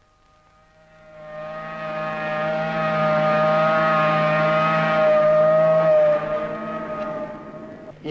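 A shipyard horn sounding one long steady note, fading in over the first two seconds and dying away near the end.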